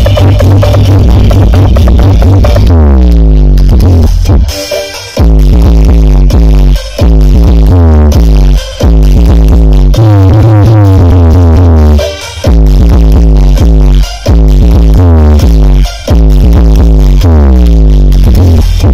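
Loud electronic dance music with heavy bass, played through a wall of triple-magnet 21-inch and 18-inch subwoofer cabinets at a sound check. Falling pitch sweeps recur, and the music breaks briefly every two seconds or so.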